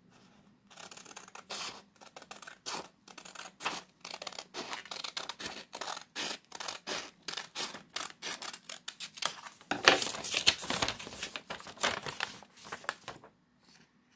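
Scissors cutting through a sheet of paper in a long run of short snips, louder and denser for a second or so near the ten-second mark, stopping shortly before the end.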